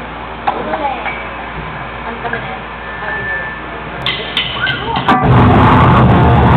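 Bar-room chatter and murmur between songs, with a few sharp clicks near the end; then, about five seconds in, a live rock band starts its song loudly all at once.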